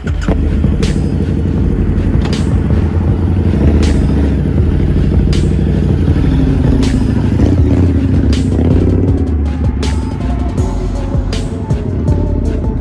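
Harley-Davidson V-Rod Muscle's Revolution V-twin with Vance & Hines exhaust running loudly as the bike pulls away and rides past, revving up and falling back about halfway through. Background music with a steady beat plays over it.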